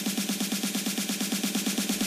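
Soloed snare drum part from a trance production playing a rapid, even roll of about eight hits a second. It sounds thin, with almost no low end.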